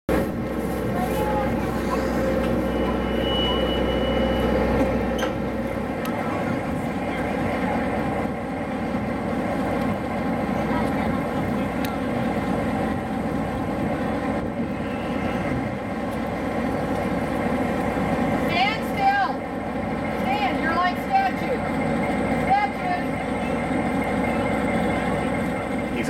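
Steady hum of a standing passenger train with its diesel locomotive idling. Children's voices come in over it in the second half.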